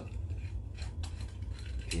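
Metal screw cap of a green soju bottle being twisted by hand, giving a few small, faint metallic clicks.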